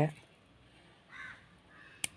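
A crow cawing once, faintly, about a second in; otherwise near silence.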